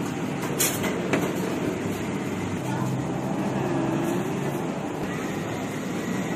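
Steady low rumble of busy street-side shop and traffic background noise, with two sharp clicks about half a second apart near the start.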